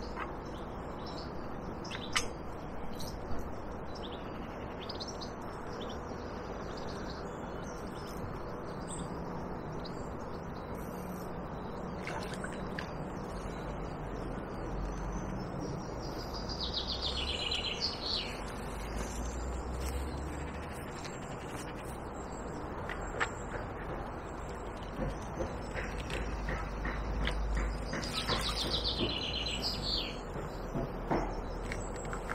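Birdsong: a descending trilled phrase about halfway through and another near the end, over a steady outdoor background hiss with a few sharp clicks.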